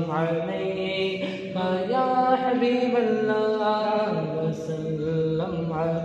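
A man singing a naat, an Urdu devotional song, with no instruments. He holds long notes that bend and waver in pitch, with a few short breaths between phrases.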